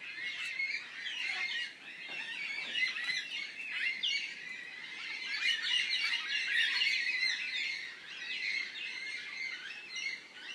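Many birds chirping at once, a dense chorus of short, overlapping high calls throughout.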